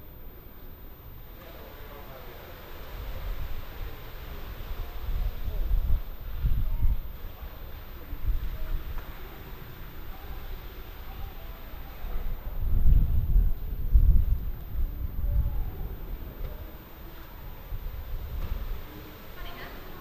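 Wind buffeting the microphone in irregular low rumbling gusts, loudest about six and thirteen seconds in, over faint murmured conversation.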